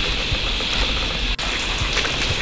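Steady high-pitched drone of cicadas in rainforest, with a low wind rumble on the microphone; the sound breaks off for an instant about one and a half seconds in.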